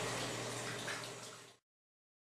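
Water running into a utility sink as a flat-mop finish applicator pad is rinsed under the tap. It fades steadily, then cuts off to silence about one and a half seconds in.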